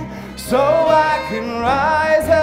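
A mixed choir of men's and women's voices singing a song together over instrumental backing. The voices dip briefly, then a new sung phrase comes in about half a second in.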